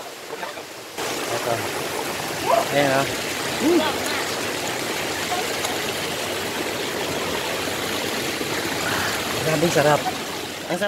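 Spring water running steadily off a rock face, jumping suddenly louder about a second in. Brief voice sounds come over it around three seconds in and again near the end.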